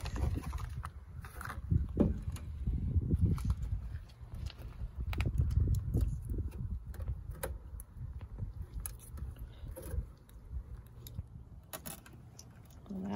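Low rumbling handling noise with scattered light plastic clicks and rustles as a 3157 bulb is handled in its blister pack and an old bulb is worked out of the tail-light socket.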